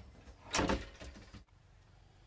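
A wardrobe door being shut: a sharp click, then a louder knock and scrape about half a second in, with a few lighter knocks after.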